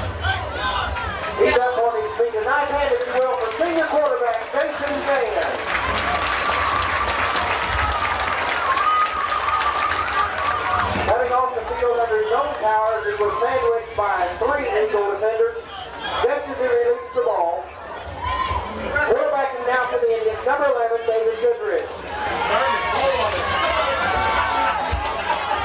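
Indistinct public-address voice over outdoor stadium loudspeakers, in phrases with pauses, over a general hubbub. A steady held tone sounds for several seconds near the middle.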